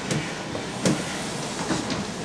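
Room background noise: a steady rumble with a few light knocks, the sharpest a little under a second in.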